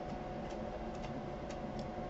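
Quiet room tone with a steady hum and a few faint ticks about half a second apart.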